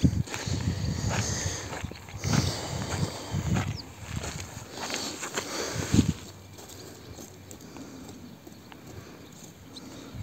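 Footsteps on dry, loose tilled soil, irregular scuffs for the first six seconds, ending in a sharper knock; then much quieter once the walking stops.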